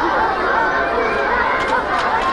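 Large crowd of people chattering, many overlapping voices at a steady level with no single voice standing out.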